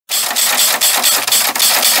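Intro music: a loud, fast drum roll of rapid, even snare-like hits, about seven a second.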